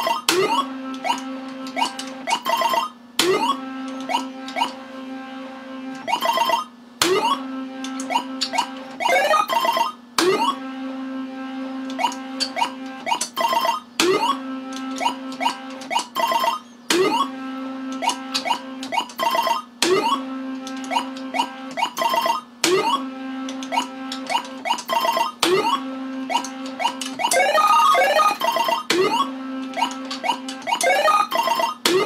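Universal Tropicana 7st pachislot machine being played game after game, a spin about every three seconds: a steady low electronic tone while the reels turn, sharp clicks as the reels start and stop, and beeping electronic tones. Near the end a rising run of electronic tones plays as the machine pays out a small win.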